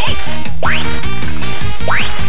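A CR Osomatsu-kun pachinko machine playing its reel-spin music in kakuhen (probability-boost) mode, with a short cartoon sound effect at the start and two rising whistle-like sweeps about a second apart.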